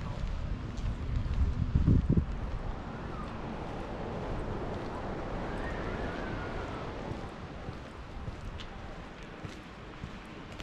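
Wind buffeting the action camera's microphone, with a strong low gust about two seconds in, over a steady outdoor rush that swells and then fades around the middle.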